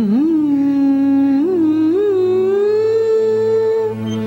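A woman singing slowly in long held notes with small ornamental bends, the line gradually rising in pitch, over a steady low drone.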